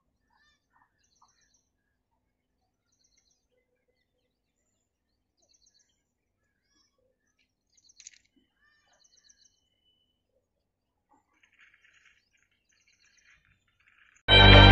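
Near silence with faint birdsong: small birds chirping in short repeated phrases, and a brief faint click about eight seconds in.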